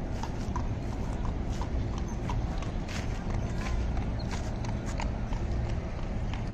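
Hooves of a carriage horse clip-clopping on a paved road, an even beat of about three strikes a second, with people's voices in the background.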